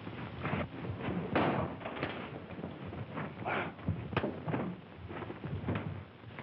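Fistfight: about a dozen irregular thumps of blows and bodies hitting the floor, the loudest about a second and a half in.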